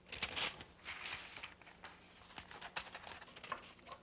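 Scissors cutting paper: soft paper rustling with a string of small, sharp snips.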